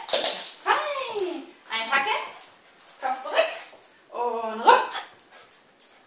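Small dog giving a run of about five barks and whines, some of them sliding down in pitch.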